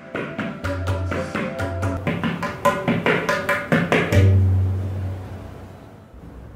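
A pair of tabla played by hand: a quick run of sharp, ringing strokes on the smaller right-hand drum with deep bass strokes from the larger left-hand drum. About four seconds in it settles on one long bass note that fades away.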